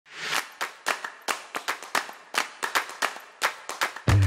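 A short rising swell, then a run of sharp claps, about four a second and coming a little faster toward the end.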